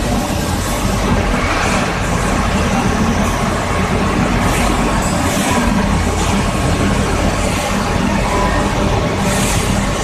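SPU 20 CNC lathe running: a steady mechanical hum with a hiss over it.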